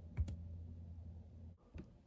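A couple of quick, faint clicks from a laptop's keys or trackpad, over a low steady hum that cuts off about one and a half seconds in.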